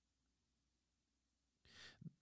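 Near silence, with one faint, short breath drawn in by the speaker near the end.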